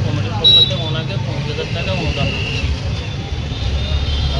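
A man talking over the steady low rumble of road traffic, with a short loud clatter about half a second in.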